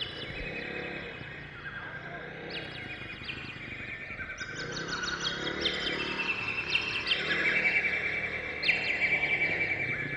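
Birds chirping, with many short repeated trills and calls overlapping throughout.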